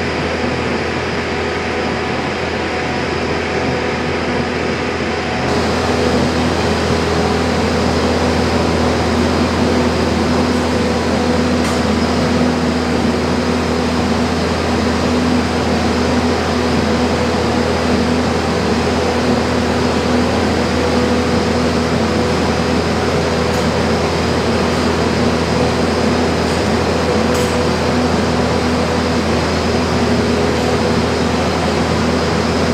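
Mensch sand bedding truck running steadily, its engine humming while the conveyor throws sand out into the cow stalls. The sound gets louder about five seconds in and stays steady.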